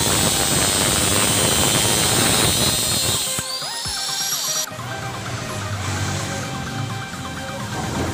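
Angle grinder cutting through an old steel motorbike frame, a loud gritty whine for the first three seconds or so; its pitch then rises and it cuts off suddenly near five seconds in. Background music plays throughout.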